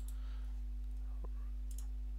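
A few faint, scattered computer mouse clicks over a steady low electrical hum.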